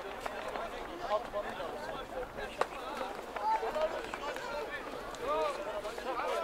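Spectators talking at once: many overlapping men's voices with no clear words, and a single sharp click about two and a half seconds in.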